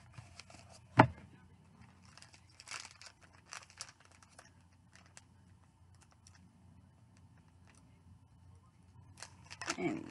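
A sunglasses case and cleaning cloth being handled: one sharp click about a second in, then faint rustling and a few small taps.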